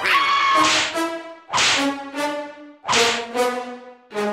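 Cartoon whip-crack sound effects for a frog's tongue lashing out and striking, three sharp cracks about a second and a half apart, over a brassy comic music score.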